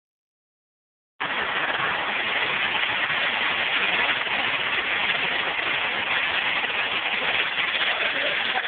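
Mill spinning machine running with a steady, even mechanical noise that starts about a second in.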